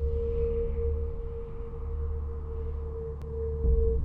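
Trailer sound design: a single steady, ringing mid-pitched tone held over a deep rumble, the rumble swelling near the end.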